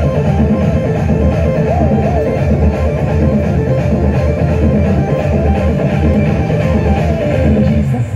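A Christian song playing loudly in an instrumental passage without singing, over a steady heavy bass beat.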